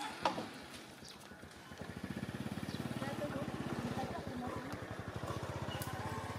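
A small engine idling with a rapid, even putter that comes in about two seconds in and runs on steadily. Faint voices can be heard at the start.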